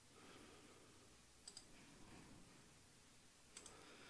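Near silence, broken by two faint double clicks of a computer mouse, about one and a half seconds in and again near the end.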